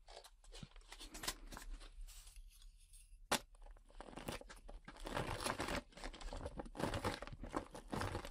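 Close-miked mouth sounds of eating somen noodles: soft wet clicks and chewing, with one sharper click about three seconds in and busier eating sounds in the second half.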